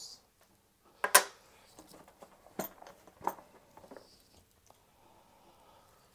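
Handling noise of small tool accessories in a plastic case: a few sharp clicks and knocks of plastic and metal parts, the loudest about a second in and two more near the middle.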